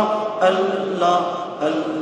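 A man's voice chanting an Arabic recitation into a microphone, in long held notes that step from one pitch to another, with short breaks between phrases.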